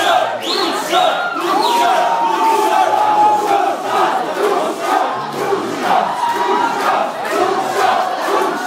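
A crowd of young men chanting and shouting together in unison, with rhythmic repeated shouts at first and a long drawn-out shouted note about two seconds in.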